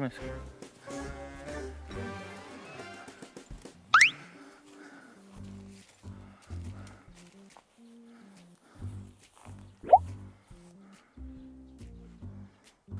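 Light background music with a steady bass line. A loud rising whistle-like sound effect sweeps upward about four seconds in, and a shorter rising one comes near the end.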